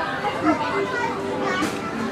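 Crowd babble: many people talking at once, with children's voices among them, and no single voice standing out.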